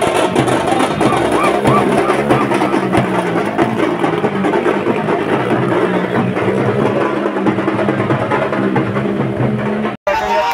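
Drums beaten in a marching street procession, a dense continuous rhythm, with a crowd's voices mixed in.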